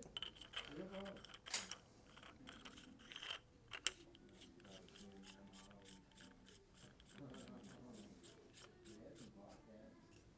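SilencerCo Omega 36M suppressor's piston kit being threaded by hand into the metal suppressor tube. Faint scrapes and scattered clicks at first, one sharper click, then an even run of quick small metallic clicks, about six or seven a second, as the threads turn.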